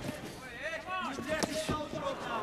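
A commentator's voice, broken by sharp thuds of kickboxing blows landing in a clinch: one right at the start and two close together about a second and a half in.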